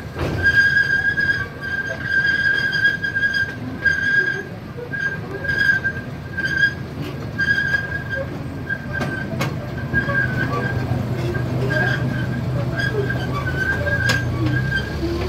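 Chance Amusements C.P. Huntington miniature train rolling along its track, rumbling and clattering unevenly. A high, steady squeal comes and goes in short stretches throughout, and a low hum joins about two-thirds of the way in.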